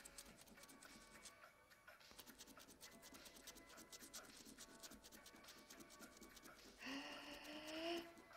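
Faint, rapid scraping of a five pence coin rubbing the coating off a paper scratch card. A brief low hum comes near the end.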